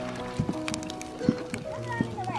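Background music with long held notes, broken by a few short sharp clicks or knocks.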